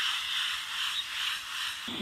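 Water spraying from a garden hose nozzle onto a dog's wet coat, a steady hiss that cuts off abruptly near the end.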